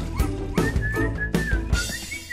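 Cartoon background music: a steady beat of percussive hits, with a high whistled melody coming in about half a second in.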